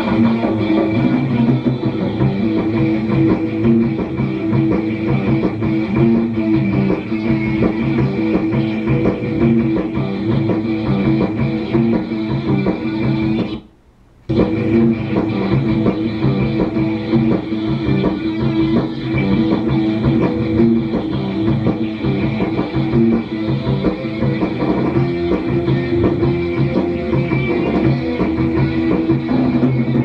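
Three-piece rock band (electric guitar, bass guitar and drums) playing live, heard as an old videotape played back through a TV and re-recorded. The sound cuts out for under a second about halfway through, then the music carries on.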